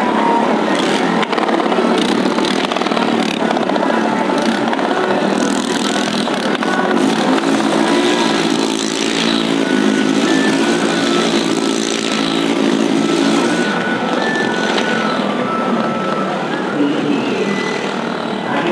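Motorcycle engines running in a well-of-death drum, a loud, continuous mechanical din, with one engine holding a steady note for several seconds in the middle.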